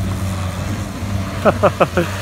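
Saturn sedan's engine running at a steady low pitch as the car drives across the dirt. A few short bursts of laughter come near the end.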